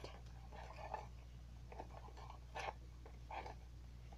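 Faint rustling and a few soft clicks from a small necklace package being handled in the hands, over a low steady hum.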